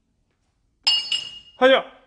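Glazed ceramic cups and stainless-steel bowls clinking on a shelf as they are handled: two ringing clinks close together about a second in. A short, loud voiced cry follows about half a second later.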